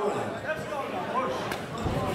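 Indistinct voices calling out in a large hall, with a sharp click about one and a half seconds in and a dull thud near the end.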